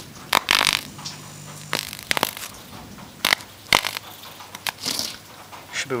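High-current electric arc sparking through graphite pencil lead held between jumper-lead clamps: irregular sharp snaps and crackles, with a short hissing burst near the start.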